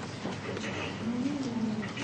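A single low cooing call that rises and then falls in pitch, a little over a second in, over faint room noise.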